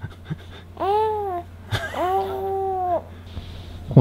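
Young infant cooing: two drawn-out vowel sounds, the first rising and falling, the second held level for about a second.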